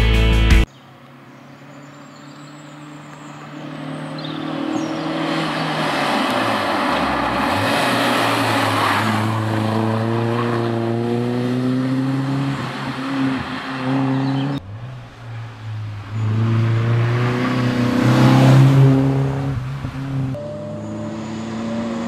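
Peugeot 205 rally car's four-cylinder engine revving hard up a hill-climb road, pitch rising through each gear and dropping at each shift. It grows louder as it approaches and passes, heard twice from two roadside spots. A brief burst of rock music at the very start.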